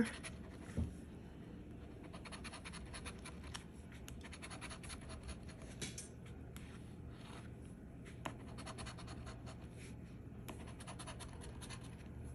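Metal coin scratching the coating off a scratch-off lottery ticket in rapid short strokes, faint, with a soft thump about a second in and a single click past the middle.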